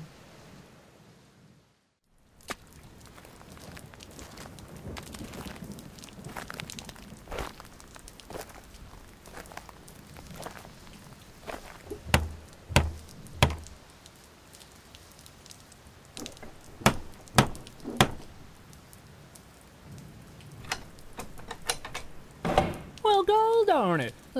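Knocking on a door: three heavy knocks about halfway through and three more about five seconds later, over a soft steady background hiss. A man's voice starts near the end.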